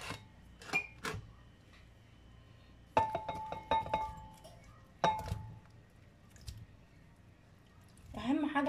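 Ceramic bowls clinking together as potato cubes are tipped from a small bowl into a larger one, with soft knocks of the pieces dropping in. The clinks come in a cluster about three seconds in and again about five seconds in, each with a brief ringing tone.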